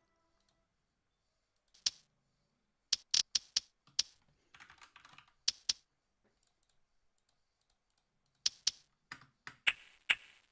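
Computer keyboard keys being pressed in short, irregular clusters of sharp clicks, with quiet gaps between and a brief soft rustle about five seconds in.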